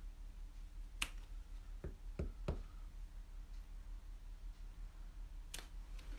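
Clear acrylic stamp block tapping and pressing onto card on a craft mat: a sharp click about a second in, three more in quick succession around two seconds, and one near the end, over a low steady hum.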